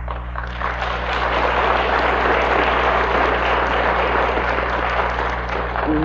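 Audience applauding, swelling within the first second and easing off near the end, over a steady low hum in the recording.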